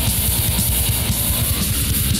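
Black metal recording: fast, even kick drumming under distorted guitars, with a bright hiss on top.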